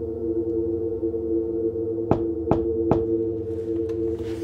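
Low, eerie droning music of two held tones over a deep hum, with three sharp knocks a little over two seconds in, evenly spaced less than half a second apart.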